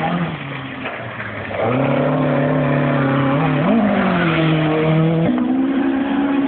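Historic rally car's engine running hard as it comes through the stage, getting loud about a second and a half in, with a brief rise in pitch about halfway and a sudden step up in pitch near the end.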